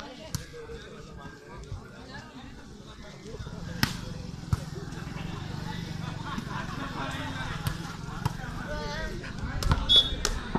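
Volleyball being struck during a rally: a handful of sharp slaps of hands on the ball, spaced a second or more apart, with players' and onlookers' voices in the background. A low steady hum comes in a few seconds in.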